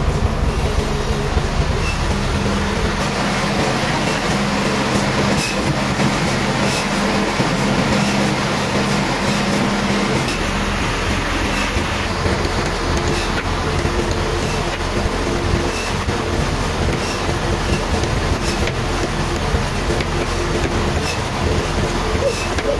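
Large log band sawmill running: steady mechanical noise with a low hum that changes pitch about halfway through and a faint, regular ticking.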